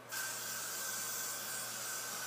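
An aerosol can of Got2b Glued Blasting Freeze Spray, a hairspray, spraying in one steady hiss that starts a moment after the beginning.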